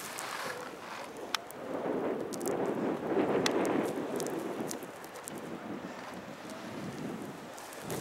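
Wind on the microphone and skis sliding on packed snow. The noise swells louder about two to four seconds in.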